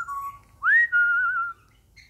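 African grey parrot whistling: a short rising whistle, then a sharp upward swoop into a held, slightly wavering whistle lasting about a second.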